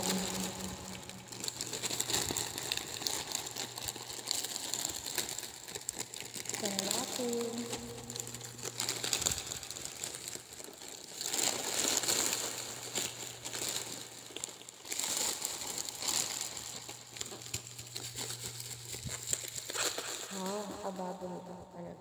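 Plastic courier mailer and the black plastic wrapping inside it being handled and torn open, a crinkling, crackling rustle of plastic throughout.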